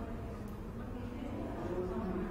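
A steady low hum with faint wavering tones running through it.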